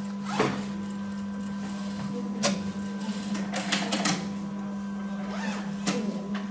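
Industrial lockstitch sewing machine stitching fabric: a steady motor hum under short runs of stitching and sharp clicks, the clearest about half a second and two and a half seconds in.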